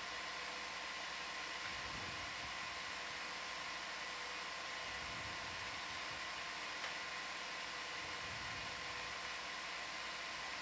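Steady hiss with faint, unchanging hum tones and no distinct events: the background noise of the ROV control-room audio feed.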